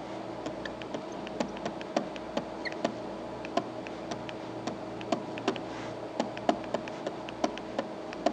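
Pen stylus on a tablet screen while writing by hand: light, irregular clicks and taps, several a second, over a steady low hum.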